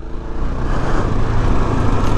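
Kawasaki KLR650's single-cylinder 650 cc engine running at steady low revs while the bike rolls along a dirt track, a low hum under a steady rushing noise of wind and tyres.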